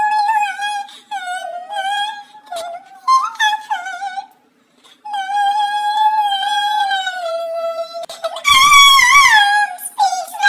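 A woman singing solo in a high register, with no instrument beneath, holding long notes; she breaks off briefly about halfway, and her loudest note, near the end, wavers in pitch.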